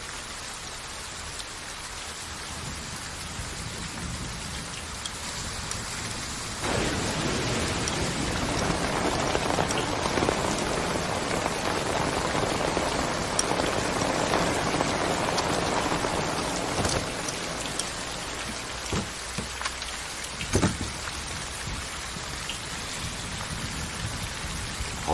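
Heavy rain falling steadily, growing louder about seven seconds in and easing back after about seventeen seconds, with a few short sharp knocks in the quieter stretch that follows.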